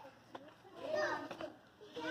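A child's voice, one short utterance from about half a second in to a second and a half, amid children playing.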